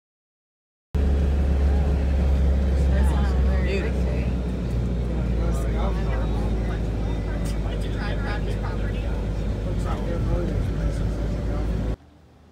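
A moving bus heard from inside its cabin: a loud, steady, deep rumble that starts suddenly about a second in and cuts off at the end, with indistinct voices of people talking over it.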